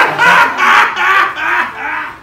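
A woman and a man laughing heartily together in several loud bursts.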